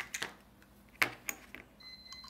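Light clicks and taps of the Baoer 3035 fountain pen's metal barrel and unscrewed nib section being handled, with one sharper click about a second in and a faint thin high tone near the end.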